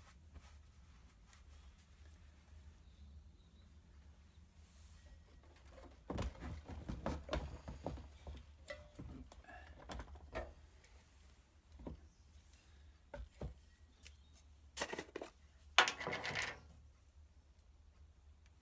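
Handling noises on a steel workbench: scattered knocks and clatters of small items and a tin being moved, from about six to eleven seconds in. A louder burst of clattering follows at about fifteen to sixteen seconds, with one sharp knock.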